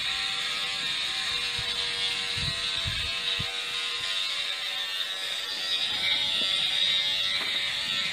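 Electric hair clippers buzzing steadily in a haircut video played back through computer speakers, with a few soft low thumps near the middle.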